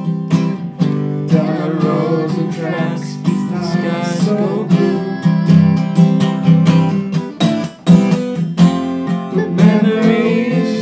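Acoustic guitar strummed in a steady rhythm of chords, an instrumental break in a folk song.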